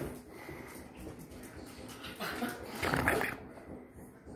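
Small dog barking and growling in a short run of bursts about two seconds in, its way of demanding food.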